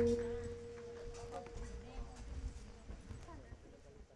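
The last note of the gamelan rings and dies away in the first second. It is followed by low murmured voices and scattered light knocks and clicks that slowly fade.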